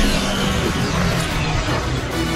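Sci-fi hover speeder engine sound as the vehicle sweeps close past, with the score music running underneath.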